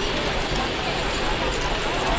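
Chatter of a walking crowd of pilgrims: many voices mixed together in a steady, unbroken murmur outdoors.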